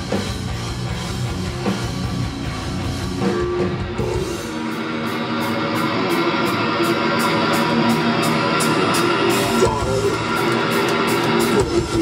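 A heavy metal band playing live, heard from the crowd: distorted electric guitars over a drum kit, with a steady beat of drum and cymbal hits coming through more clearly from about four seconds in.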